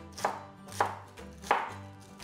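Kitchen knife chopping cabbage finely on a cutting board: three sharp strokes of the blade hitting the board, about two-thirds of a second apart.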